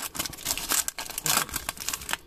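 Foil wrapper of a trading card pack crinkling in the hands as it is handled and worked open, a run of irregular crackles.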